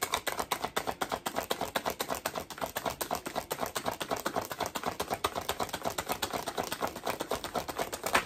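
A deck of tarot cards being shuffled in the hands: a rapid, steady run of soft card slaps and flicks, about ten a second.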